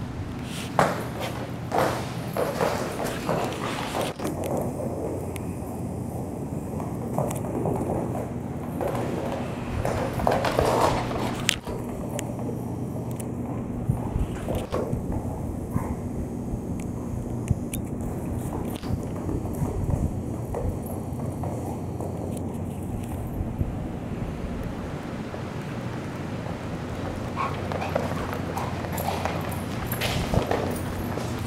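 A Great Pyrenees playing with a tennis ball on rubber floor mats: scattered paw thumps, scuffs and knocks at irregular intervals, with a steady low hum underneath.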